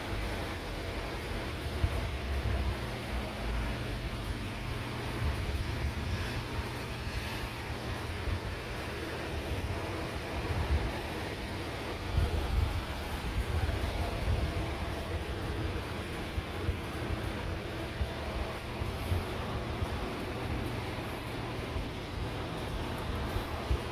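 Wind rumbling and buffeting on the microphone in irregular gusts over a steady background hiss.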